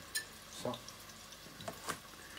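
A few faint knocks of a chef's knife on a plastic cutting board as the chopping of fresh herbs resumes near the end, over the faint sizzle of a pan frying on the hob.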